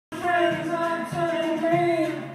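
Upright piano playing with a singing voice over it, in held notes about half a second long.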